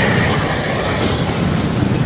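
Jet aircraft flying past low overhead in formation, a loud, steady rumbling rush of engine noise, mixed with surf and wind on the microphone.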